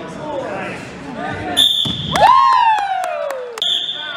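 Two short, high-pitched signal tones sound about two seconds apart during a school wrestling match. Between them come a long yell that falls in pitch and a few sharp knocks, with voices in the gym.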